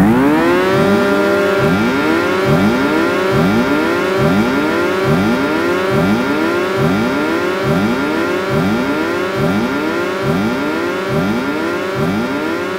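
Electronic synthesizer effect: overlapping swoops that each rise in pitch and settle onto a held tone, repeating about twice a second over a steady drone, siren-like.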